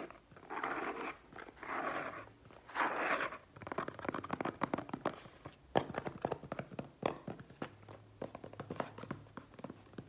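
Fingernails scratching and tapping on a cardboard box: three short bursts of scratching in the first few seconds, then a run of light, irregular taps.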